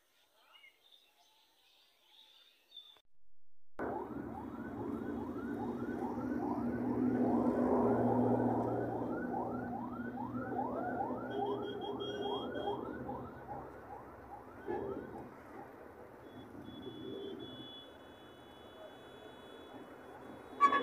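Faint bird chirping, then a cut to city noise: a low steady engine drone with a siren yelping in quick rising sweeps, about two or three a second, which fades out after about ten seconds.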